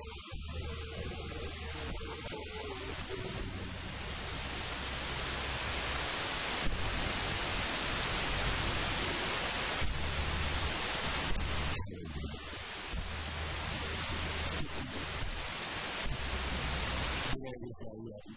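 Steady hissing noise like static that fills the sound and swells a few seconds in. It drops out briefly about two-thirds of the way through and cuts off just before the end.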